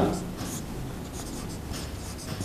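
Dry-erase marker writing on a whiteboard: a series of short, faint scratchy strokes as words are written.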